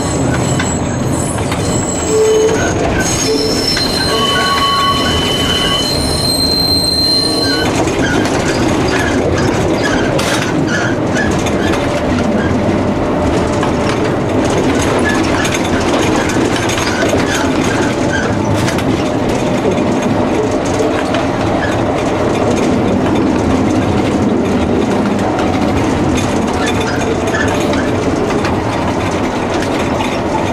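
A 1949 type N two-axle tram running, heard from inside the cab: a steady rumble and rattle of the wheels on the rails. During the first several seconds there are short high squeals as the wheels take a curve.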